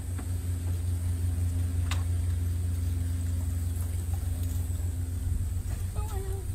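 A steady low mechanical hum, like a motor or engine running, with one brief click about two seconds in.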